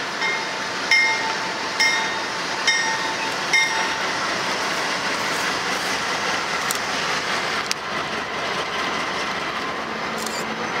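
Diesel locomotives of a freight train passing close by, their engines and wheels running steadily. A locomotive bell rings about once a second for the first four seconds, then stops.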